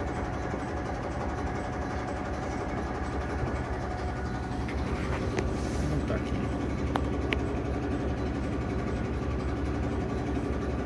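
Steady low rumble of a diesel railcar's underfloor engine and running gear, heard inside the passenger cabin as the train draws slowly into a station. A few sharp clicks come about five to seven seconds in.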